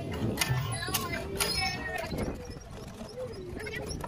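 Water gushing from a cast-iron hand pump into a gutter trough, pushing a rubber duck along, with several knocks from the pump in the first second and a half. Children's voices and high calls sound over it.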